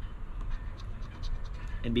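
A coin scraping the coating off a paper scratch-off lottery ticket in repeated short strokes.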